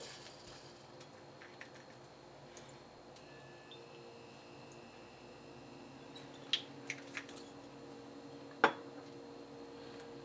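Light glass taps and clinks from a small bitters bottle and shot glasses being handled: a few quick taps about six and a half seconds in, then one sharper clink near nine seconds, over a faint steady hum.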